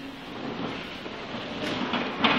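Steady rustling and shuffling noise of clergy and congregation moving in a large, echoing church, with a brief knock near the end.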